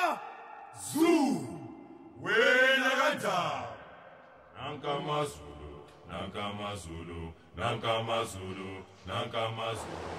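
Voices: two long, rising-and-falling called-out calls, then men's voices in short chanted phrases about a second apart.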